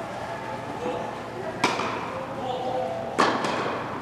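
Two sharp tennis ball strikes off racket strings, about a second and a half apart, each echoing in a large indoor hall.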